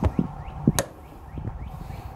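Door latch of a Masterbuilt electric smoker being fastened shut: a few sharp clicks and knocks in the first second, the loudest a little under a second in.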